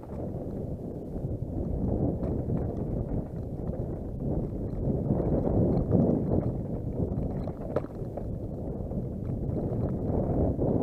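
Downhill mountain bike rattling and clattering steadily as it runs fast over a rocky trail, with short clicks from tyres hitting stones and the bike's chain and frame. There is one sharper knock near the end.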